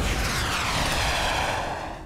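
Jet-like whoosh of a cartoon fly-by sound effect, its pitch sweeping downward as it passes and fading toward the end.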